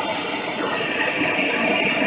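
MAPP gas hand torch flame burning steadily with an even rushing hiss, played into a crucible to bring melted .999 silver up to pouring temperature.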